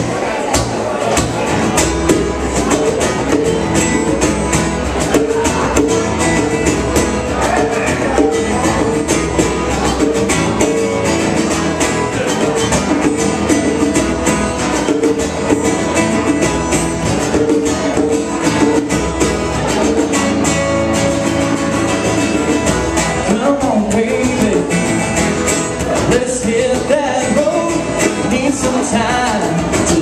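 Live acoustic band playing a song: two acoustic guitars strummed in a steady rhythm, with singing over them.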